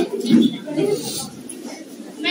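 Speech: a voice talking over a hand microphone in a room.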